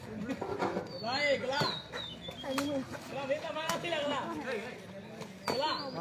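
Several people talking and calling out at a distance, with a bird's short whistle gliding down in pitch about a second in and again near the end.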